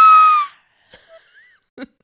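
A person's mock scream, a loud, high-pitched note held steady, cuts off about half a second in, followed by a short "ah!" near the end.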